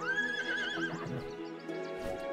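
A cartoon unicorn whinnying once, a high call of about a second that holds level and then trembles at the end, over background music.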